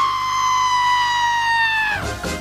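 A cartoon character's long, high-pitched scream, held for about two seconds and sliding slowly down in pitch before it cuts off.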